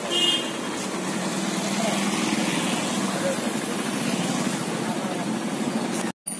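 A motor vehicle engine running steadily, with people's voices in the background.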